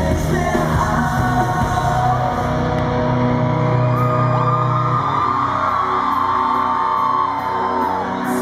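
Live rock band playing through a hall's sound system, electric guitar and bass to the fore, with voices singing and yelling over the music.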